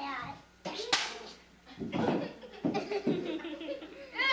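Children talking and laughing in a small room, with one sharp smack about a second in.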